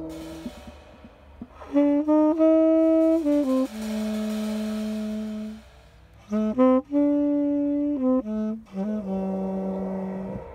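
Tenor saxophone playing long held low notes in a free jazz improvisation, with short pauses between phrases. A drum kit is played softly with mallets underneath.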